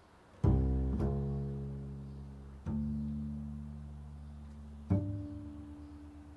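Double bass played pizzicato: four low plucked notes, about half a second, one, two and a half, and five seconds in. Each rings out and slowly fades.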